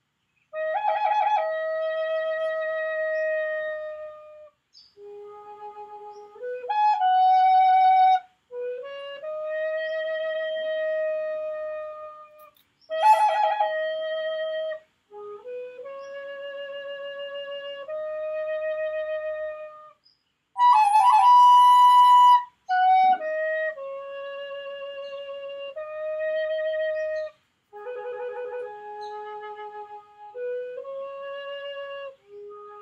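Wooden end-blown flute played in a slow, free improvisation: long held notes, mostly low, separated by short breaks for breath, with quick ornamental flutters at the starts of phrases. One higher, louder, breathier note comes a little past the middle.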